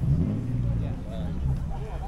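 A motor vehicle engine running close by, a low steady drone that is loudest at the start and fades near the end, with people chattering in the background.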